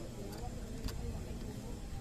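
Indistinct voices over a low rumble. Two sharp clicks come from a flat metal blade scraping dried mud out of a throttle body's idle-air passage.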